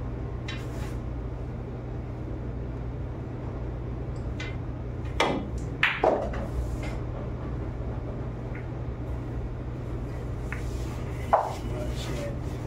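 A pool shot: the cue striking the cue ball, then sharp ball-on-ball clicks about five to six seconds in. A single further click comes near the end. A steady low room hum runs underneath.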